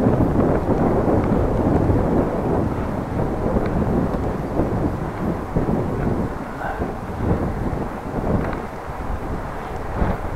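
Wind buffeting the microphone of a camera riding on a moving bicycle: a loud, uneven rumbling rush that eases a little after about six seconds.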